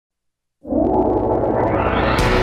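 Synthesized swelling drone of a TV station ident, starting abruptly about half a second in and growing brighter as it goes.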